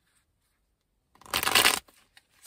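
A deck of tarot cards being shuffled: one short, loud burst of riffling cards about a second in, lasting about half a second.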